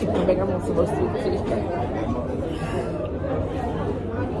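Indistinct background chatter of many voices in a busy restaurant dining room, steady throughout.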